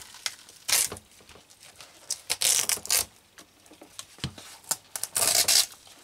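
Glued braided trim being torn off a shoe's wedge heel: irregular rasping, crackling pulls as the glue lets go, the longest two about two and a half and five and a half seconds in.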